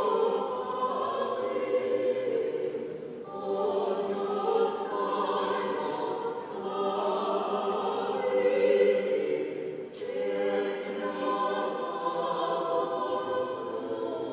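A small mixed vocal ensemble of women's voices and one man's voice singing sacred choral music a cappella, in sustained phrases with short breaks about 3, 6 and 10 seconds in.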